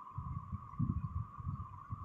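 Low, irregular rumble and soft thumps of a phone's microphone being handled as the camera is moved.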